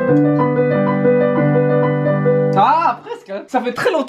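Digital piano played with held chords under a melody, the notes stopping about two-thirds of the way through. A man's voice follows.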